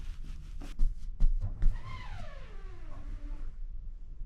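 A pillow being squeezed and handled: fabric rustling with a few sharper grabs in the first second and a half, then a pitched tone that slides steadily down in pitch for about a second and a half.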